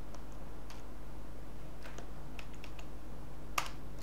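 Keystrokes on a computer keyboard: a handful of scattered taps, the sharpest one near the end, over a steady low hum.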